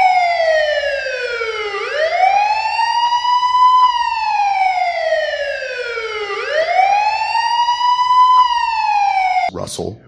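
Police car siren wailing, its pitch sliding slowly down and then sweeping back up, a little over two cycles.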